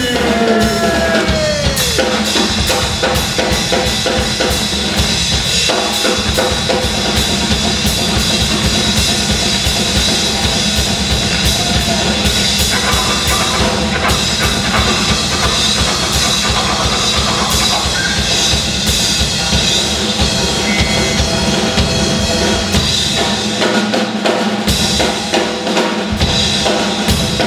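A drum kit in a live blues band, played busily and without a break: snare, bass drum and cymbals, with the other instruments holding steady notes underneath.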